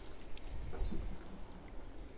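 Faint bird chirps over low outdoor background noise.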